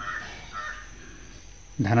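Two faint, short, harsh bird calls in the background, close together in the first second.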